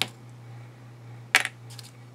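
Small plastic clips handled on a craft cutting mat: a sharp clack about a second and a half in as one is set down, with a few lighter ticks after it.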